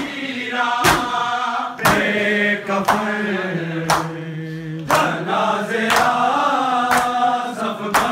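A group of men chanting a noha lament in unison, with sharp chest-beating (matam) strikes about once a second keeping the beat.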